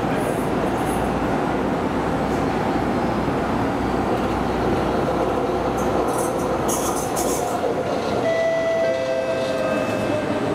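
An SMRT North-South Line metro train's steady rumble as it runs along the elevated track into the station, with brief high-pitched hissing about six to seven seconds in and a steady electric whine in the last two seconds as it slows.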